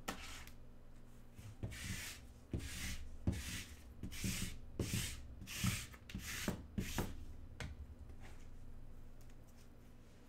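Gloved hands handling a stack of sleeved trading cards on a table mat: about ten short rustling scrapes over six seconds, then quieter.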